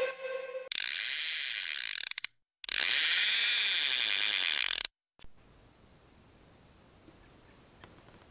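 Intro music ending, then two bursts of a fishing reel's drag clicking rapidly as line peels off, the first about a second and a half long, the second about two seconds long.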